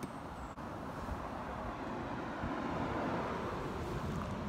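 Road traffic: a steady rush that swells a little past the middle and then eases off.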